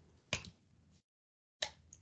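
Two short clicks, about a third of a second in and again near the end, with dead silence between.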